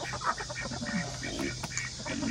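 A mixed flock of chickens and ducks calling in short, scattered clucks and quacks over a steady low hum.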